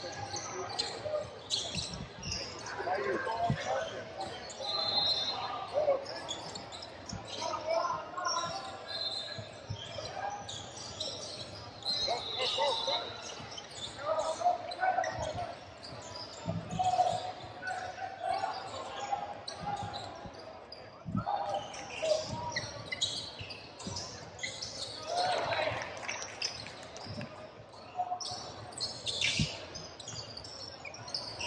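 Live basketball play on a hardwood gym court: a basketball bouncing repeatedly on the floor, shoes squeaking on the hardwood, and players and spectators calling out, all carrying in a large hall.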